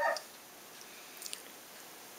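Quiet room tone with a faint steady hiss, no machine running; the end of a spoken word right at the start and a couple of faint ticks just past the middle.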